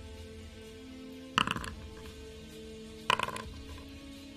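Soft background music with held tones, broken twice by a short bright clatter, about a second and a half apart.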